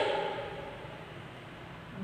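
A pause between spoken words: the end of a woman's word fades out at the start, followed by low, steady room noise.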